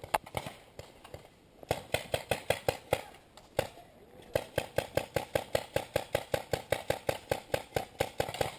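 Paintball markers firing fast strings of shots, about five a second, with a short break partway through.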